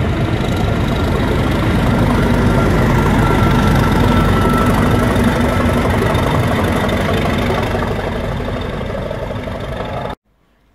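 A British Rail Class 37 diesel locomotive (37685), coupled at the rear of the train, goes past with its English Electric V12 diesel engine running loudly over the rumble of coach wheels on the rails. The sound is loudest in the middle and fades steadily as the locomotive draws away.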